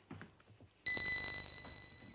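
A single bright bell ding, struck about a second in and ringing on, fading slowly, after faint shuffling movement.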